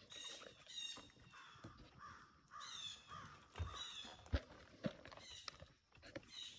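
Harsh bird calls repeated throughout, with a few sharp knocks on wood from raccoons feeding on a log feeder, the sharpest a little after four seconds in.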